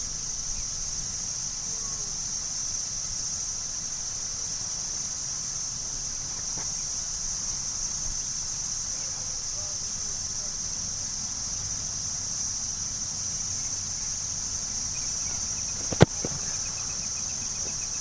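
A steady, high-pitched insect chorus drones without a break. About two seconds before the end there is a single sharp impact, the loudest moment.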